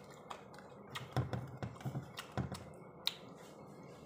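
Close-mouthed eating sounds of a man biting and chewing a raw green chilli: an irregular run of short, crisp crunches and clicks, busiest in the middle.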